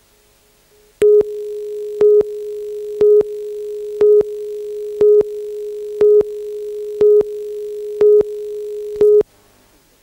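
Videotape countdown leader: a steady mid-pitched line-up tone with a louder beep once a second, nine beeps in all, cutting off suddenly near the end.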